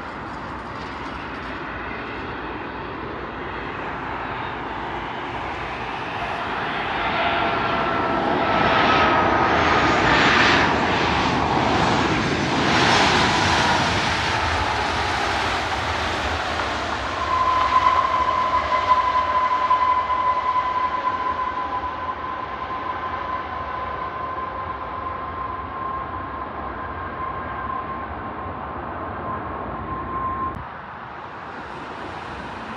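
Boeing 737 airliner jet engines. The noise builds as the plane comes close, with whining tones that slide down in pitch as it passes. About halfway through, a louder rush of engine noise starts with a steady high whine, and both slowly fade.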